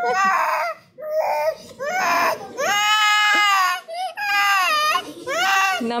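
Toddler crying hard in a string of high-pitched wails, with one long held wail in the middle, after a vaccine injection.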